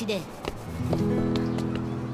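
Background score music comes in just under a second in: held instrument notes building into a steady chord, with a few light plucked notes.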